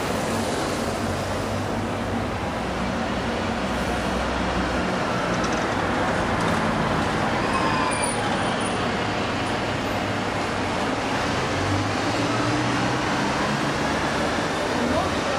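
Steady street traffic noise, with vehicle engines running low, and faint voices of people.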